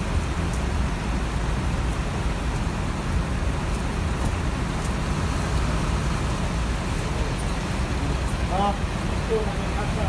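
Steady rain with a constant low rumble of bus and traffic engines. Brief distant voices come through near the end.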